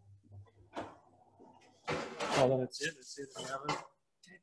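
Metal baking tray being pushed onto an oven rack: a light click, then a quick run of metal scrapes and clatters as tray and rack slide in.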